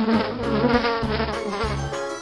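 A fly buzzing steadily, its pitch wavering slightly.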